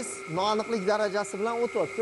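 A man speaking, over a steady background hum with a constant high tone.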